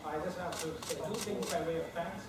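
A person talking, with four or five short sharp clicks over the speech between about half a second and a second and a half in.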